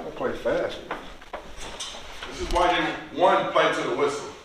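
Indistinct voices in a small room, with a few light knocks or clicks about a second in.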